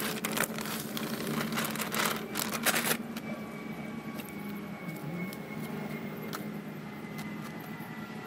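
A plastic bag crinkling and rustling for about the first three seconds, then softer scattered scuffs of hands working potting soil into a plastic pot, over a steady low hum.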